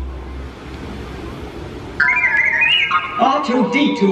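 Show soundtrack over outdoor loudspeakers: a music cue dies away into a short lull of crowd murmur, then about halfway a sudden high electronic sound effect with gliding tones cuts in, followed by a voice.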